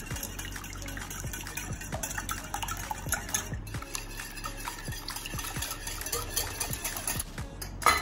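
A spoon working vegetables into raw beaten eggs in a bowl: irregular light clinks of utensil on bowl with wet sloshing of the egg mixture.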